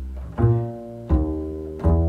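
Upright double bass played pizzicato: a low note dies away, then three walking-bass notes are plucked about three quarters of a second apart, each ringing and fading. The line keeps the major third over C7, which sounds much better than the minor-sounding version.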